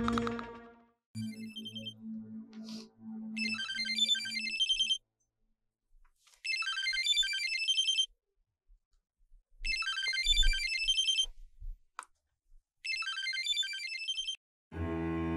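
A mobile phone ringing with a melodic electronic ringtone. The phrase plays four times, about every three seconds, with short silences between.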